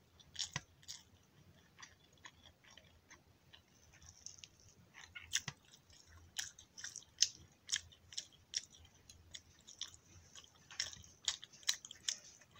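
Close-up eating sounds: chewing, and fingers working rice on a plate, heard as a string of irregular short clicks and smacks.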